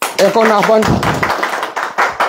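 A small group of people applauding, a patter of hand claps under a man speaking over a microphone.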